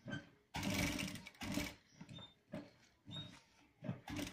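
Sewing machine stitching a pocket onto a shirt in short bursts, stopping and starting several times. The longest and loudest run comes about half a second in.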